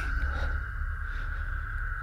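A steady low hum with a thin, steady high tone above it, unchanging throughout.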